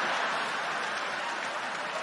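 Large theatre audience laughing and applauding, loudest at first and easing slightly.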